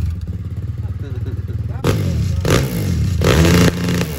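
Dirt bike engine running with a rapid low putter, its throttle blipped to a louder rev about two seconds in and again near the end.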